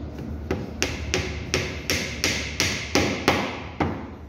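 A steel-headed hammer driving a wooden dowel into a pine plank: about ten sharp blows, roughly three a second, stopping just before the end.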